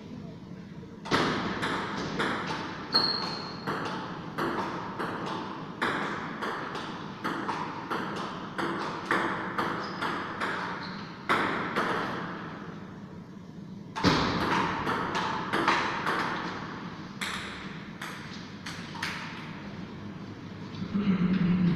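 Table tennis rallies: the celluloid ball clicking off the paddles and bouncing on the Stiga table, sharp clicks about two a second that echo in the hall. The clicks stop briefly a little past the middle as a point ends, then a second rally starts.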